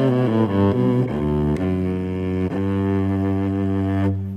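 Electric violin bowed in a low, cello-like register, below the violin's normal range. A few changing notes come first, then long held low notes.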